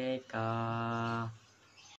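A teenage boy's voice holding two long, steady sung notes, one after the other, at the close of the song. The voice then stops and it goes quiet.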